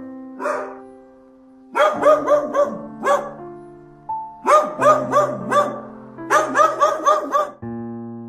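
A dog barking in three quick runs of short, high-pitched barks, about five or six to a run, over background piano music.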